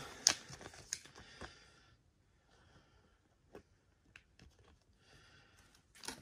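Soft clicks and light rustling of a trading card and a plastic card sleeve being handled: a few sharp ticks in the first second and a half, then fainter scattered ticks.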